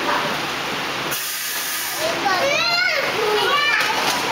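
A toddler's high-pitched voice calling out in short rising and falling sounds through the second half, over a steady hiss.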